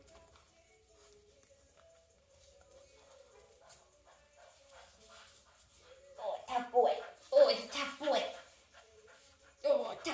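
Puppy vocalizing during tug-of-war with a rope toy. A faint, thin whine runs through the first half, then comes a run of louder short cries for about two seconds past the middle.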